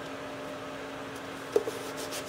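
Quiet handling of a sheet of gasket material as it is pressed into place on double-sided tape, over a steady low hum, with one brief, slightly louder sound late on.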